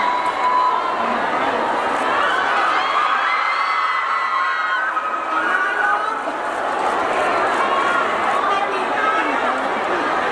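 A crowd cheering and calling out, many high-pitched voices overlapping.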